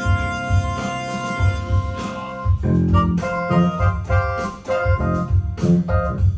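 A small ensemble of electronic keyboards playing together with an organ-like tone over a pulsing bass line: a chord is held for the first two seconds or so, then the music breaks into short, rhythmic chord stabs.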